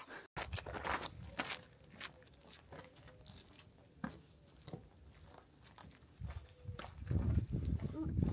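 People's footsteps on a gravel lane, a loose run of irregular scuffs and steps. A louder low rumble builds near the end.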